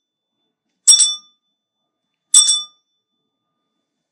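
Altar bell rung twice, about a second and a half apart, each a short, bright ring that dies away quickly. The bell marks the elevation of the chalice at Mass.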